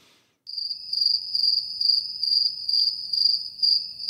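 Crickets chirping as a comedy sound effect for an awkward silence after a joke falls flat. It is a steady, high, pulsing trill that starts about half a second in.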